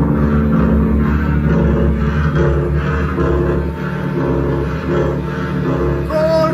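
Loud live rave-punk music: held electric guitar and synth chords over a heavy, pulsing bass.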